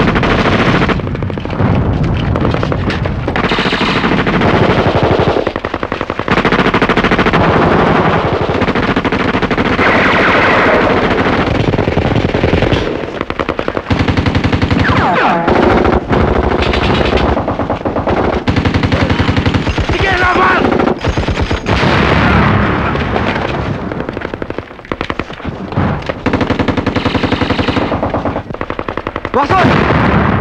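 Heavy automatic gunfire from a film's battle soundtrack: machine guns firing in rapid, nearly unbroken bursts, with a few brief lulls.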